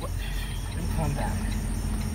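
Steady low rumble of an idling diesel truck engine, heard from inside the semi-truck's cab.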